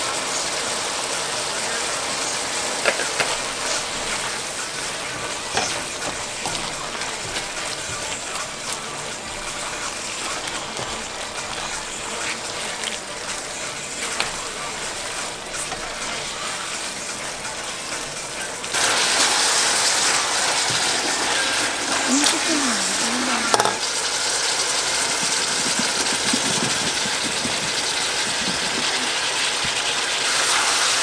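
Sliced onions and bell peppers sizzling in a large aluminium pot, with a spatula scraping and tapping against the pot as they are stirred. About two-thirds of the way in the sizzling becomes louder and stays louder.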